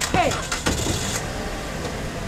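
Toyota sedan's engine running at idle, a steady low hum, with a short rush of noise about half a second in.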